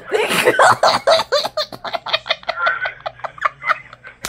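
A girl giggling in a long fit of laughter: a loud burst at the start, then a run of quick, short giggles that tapers off.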